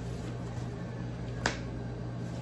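Sheets of paper being handled and shuffled, with one sharp paper snap about one and a half seconds in, over a steady low hum.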